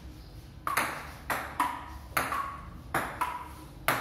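Table tennis serve and rally: the celluloid ball clicking off the paddles and the wooden table top, about seven sharp pocks with a short ring, the first just under a second in.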